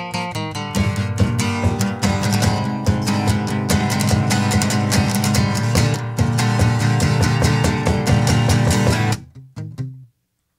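Acoustic guitar strummed fast and hard in a live folk-punk blues song, breaking off about nine seconds in to a few scattered notes.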